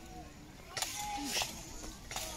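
Two sharp clanks about half a second apart: pole hammers striking steel plate armour and helmets in a knights' barrier fight. Faint crowd voices run underneath.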